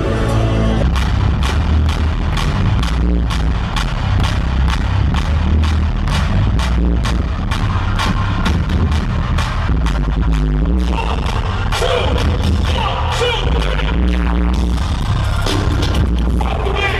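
Live hip-hop music played loud through an arena sound system, with deep bass and a steady heavy beat. A vocal comes in over it after about ten seconds.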